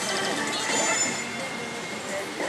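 Pachinko-hall din: a dense, steady clatter and jangle of many slot machines, with scattered electronic sound-effect tones from the pachislot machine in its bonus round.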